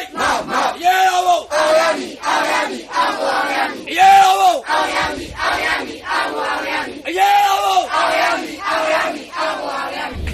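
A crowd of protesters chanting slogans in unison, with fists raised: short shouted syllables in a steady rhythm, with a long drawn-out syllable about every three seconds.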